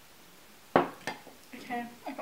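Two sharp knocks, the first loud and the second lighter about a third of a second later, as a hard object is set down on a desk with a dish-like clink; a voice starts just after.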